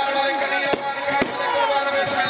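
Music with held, steady notes over crowd shouting, broken by two sharp bangs about half a second apart.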